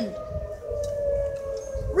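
Outdoor tornado warning siren sounding a steady tone whose pitch sinks slowly, signalling a tornado warning.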